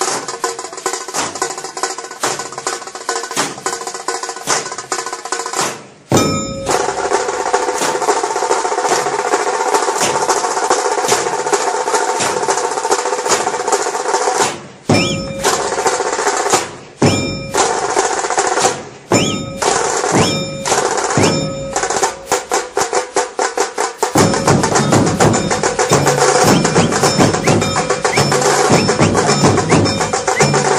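A long string of firecrackers going off in rapid, crackling succession. It turns suddenly louder and denser about six seconds in and is densest near the end.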